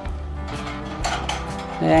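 Wire birdcage and its plastic feeding trays being handled, giving several light metallic clinks and rattles.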